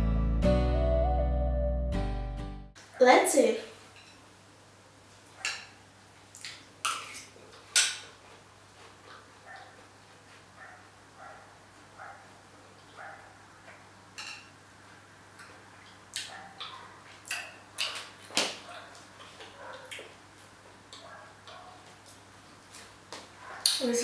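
Background music that stops about three seconds in, followed by a metal spoon clinking and scraping against a bowl at irregular intervals as someone eats from it.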